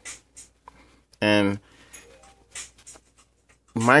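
Microfiber cloth rubbing over a Nexus 5 phone's screen and back: a few soft, short wiping strokes. A short spoken syllable comes just over a second in, and speech starts again near the end.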